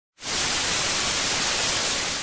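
Television static sound effect: a steady hiss of white noise that starts a moment in.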